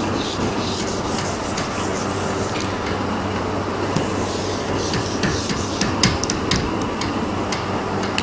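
Whiteboard eraser rubbing across a whiteboard, wiping off marker writing, over a steady low hum. A few short knocks come in the second half.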